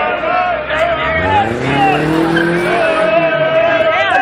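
A car engine revving up, its pitch rising from about a second in until near three seconds, under people shouting and cheering.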